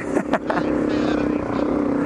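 Suzuki DR-Z250 single-cylinder four-stroke engine running at a steady pitch, with low wind rumble on the helmet microphone.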